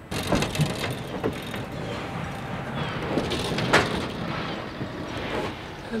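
Steady rumble of a cattle lorry, with several sharp knocks on its metal trailer, the loudest about four seconds in.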